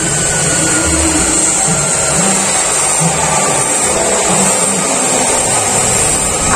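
Small plastic wheels of a miniature toy truck rolling over rough concrete as it is pulled along, a steady grinding noise.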